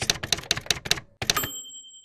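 Typewriter sound effect: about seven quick key strikes over a second and a half, followed by a short high ring that fades.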